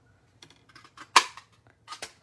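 Cherry Builder Punch (a handheld craft paper punch) cutting through a strip of cardstock: a few light paper ticks, then one sharp snap a little after a second in, and a small click near the end.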